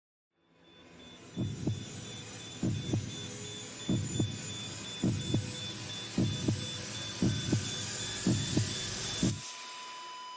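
Heartbeat sound effect: eight paired lub-dub thumps, coming a little faster as they go, over a swelling hiss with a thin high tone. It all cuts off suddenly near the end, and a single steady higher tone takes over.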